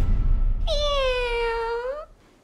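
A person imitating a cat with one long meow, a little over a second long, that dips slightly in pitch and rises again at the end.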